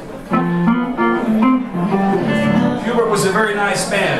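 Blonde archtop electric guitar playing a short blues lick of single notes, starting about a third of a second in, with some bent or sliding notes.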